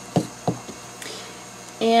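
Two knocks about a third of a second apart from a hollow dried gourd being handled while a pipe cleaner is pushed into a hole drilled in its shell.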